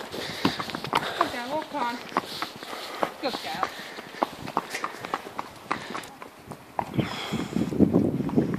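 A horse's hooves clip-clopping on a tarmac road at a walk, mixed with the footsteps of the person walking behind it, a run of sharp irregular knocks.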